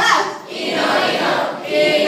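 A group of children and a young woman singing a song together, with a short dip about half a second in.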